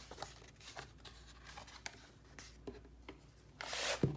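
Pages of a disc-bound paper planner being handled and flipped: light paper rustles and small clicks, with a louder swish of pages turning near the end.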